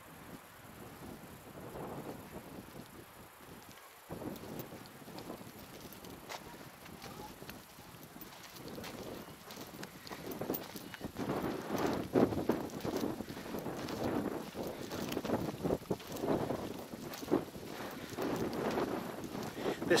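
Wind rumbling on the microphone, getting louder about halfway through, with irregular footsteps on a dirt-and-gravel path.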